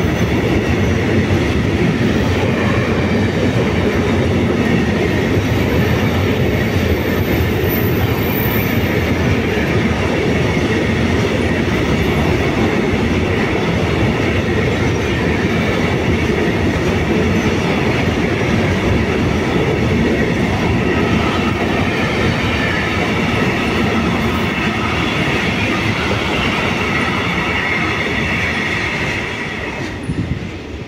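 Container wagons of a long intermodal freight train rolling past close by: steady, loud wheel-on-rail noise with a faint high ringing. It falls away suddenly near the end as the last wagon clears.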